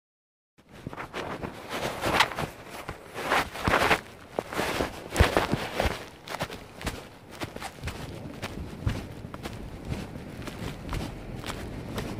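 Footsteps with rustling and knocking, loudest in the first half, then lighter, frequent taps.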